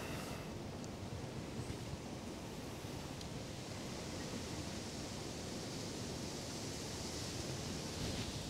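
Quiet, steady background hiss with no distinct sounds.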